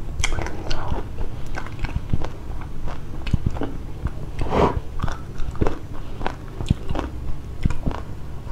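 Close-miked chewing and biting: many short, sharp, crunchy clicks and wet mouth sounds, with a longer, louder one about halfway through.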